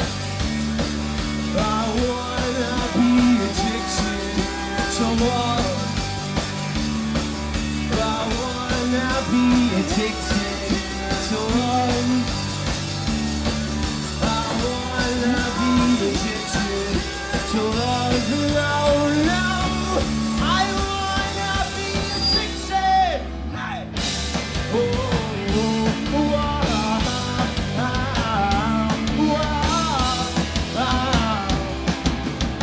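Live rock band playing loud: electric guitars, bass and drums with singing. There is a short break about three-quarters through before the band crashes back in.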